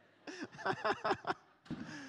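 A person laughing: a quick string of about six short bursts, then a falling laugh or breath near the end.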